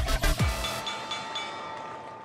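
Electronic theme music. Its beat of deep drum hits stops about half a second in, leaving held chime-like tones that fade away.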